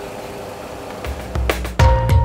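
Steady engine hum of a Boeing 737 Classic full flight simulator with the aircraft on the ground after landing. About a second in, music with deep bass and drum hits starts and quickly becomes the loudest thing.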